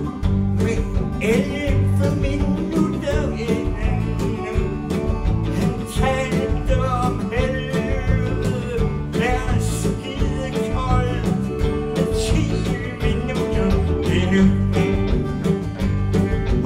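Live band playing an instrumental passage between sung lines: guitars, bass and drums with a steady beat.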